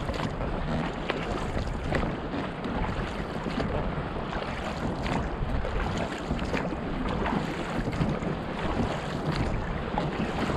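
Seawater splashing and slapping against a rowed inflatable dinghy, with short splashes every second or so, over wind rumbling on the microphone.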